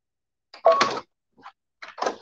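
Hands working at a sewing machine's presser foot: a sharp clack about half a second in, then a few lighter clicks.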